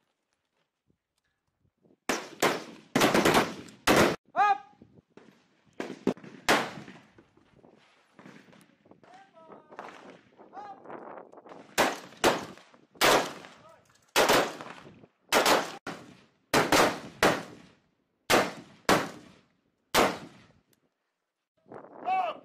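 Rifle shots on an outdoor range: a fast cluster of shots about two to four seconds in, a couple more around six seconds, then a string of single shots fired in quick succession, about one or two a second, from about twelve to twenty seconds in.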